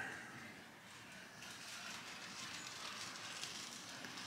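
Quiet indoor room tone with a faint hiss and a few soft, faint rustles.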